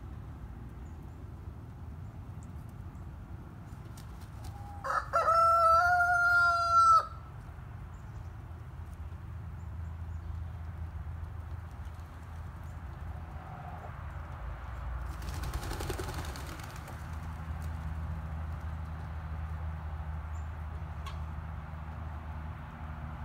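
A rooster crows once, about five seconds in: one long call of about two seconds at a steady pitch, the loudest sound here. Otherwise there is a low steady rumble, with a short hiss of noise about fifteen seconds in.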